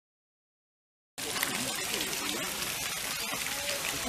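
Silence for about the first second, then a steady hiss of splashing water cuts in suddenly: a pond fountain's spray falling back onto the water, with faint voices behind it.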